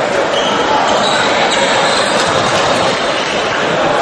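Live sound of an indoor basketball game: a steady din of crowd voices echoing in the hall, with a basketball bouncing on the court.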